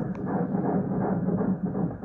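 Fetal heartbeat played by an ultrasound machine's Doppler: a fast, pulsing whoosh, muffled and low.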